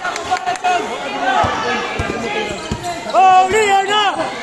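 A basketball being dribbled on a concrete court, about four bounces some two-thirds of a second apart, over the voices of shouting players and spectators; a loud shout near the end is the loudest sound.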